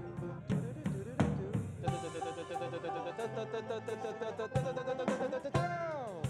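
Country band playing an instrumental passage: drum kit with snare and rimshots, quick picked banjo notes, and pedal steel guitar notes bending down in pitch, the steel's slide giving the blue note, most plainly near the end.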